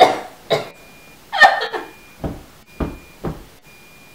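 A person's short vocal sounds, about five brief bursts of breath and voice with pauses between them, the longest about a second and a half in.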